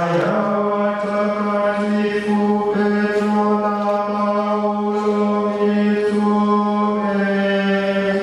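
Male chant of a blessing prayer, sung on one steady reciting note as a single long phrase that fades out at the end.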